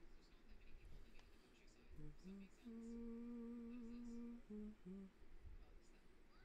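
A man humming quietly with his mouth closed: a couple of short notes about two seconds in, then one long held note of nearly two seconds, then two short notes near the end.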